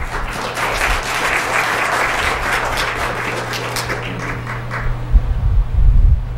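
Audience applauding, dying away after about four seconds, over a steady low hum. A few low thumps near the end are the loudest moments.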